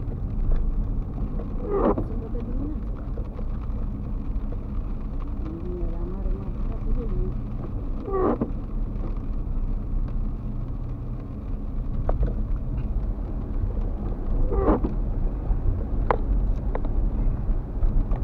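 Steady low rumble of a car driving on a wet street, engine and tyre noise heard from inside the cabin, with a few brief higher sounds about two, eight and fifteen seconds in.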